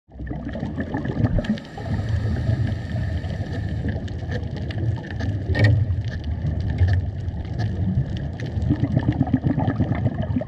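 Underwater sound on a coral reef: a steady low rumble with many sharp clicks and crackles scattered throughout, and one louder crack a little past halfway.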